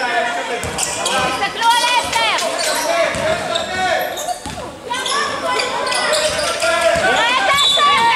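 Basketball bouncing on a hardwood gym court during play, with voices calling out across the large hall.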